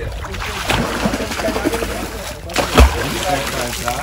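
Hand splashing and slapping the river surface, the signal that calls pink river dolphins in for food. A loud low thump comes near the three-second mark.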